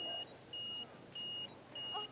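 An electronic beeper giving short, high-pitched, even beeps, four of them, a little more than half a second apart.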